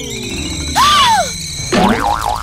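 Cartoon sound effects for a laser zapping a hand: a falling whistle fading out, then a short squeal that rises and falls over a burst of hiss about three quarters of a second in, and a warbling tone starting near the end.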